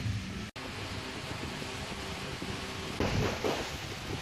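Steady low background hum and hiss, cut off for an instant about half a second in. About three seconds in, louder rough handling noise on the microphone begins.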